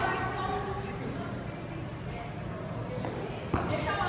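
Faint, indistinct voices in a large echoing gym hall, with a single thud about three and a half seconds in.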